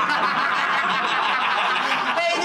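Laughter running on without a break, with no words spoken.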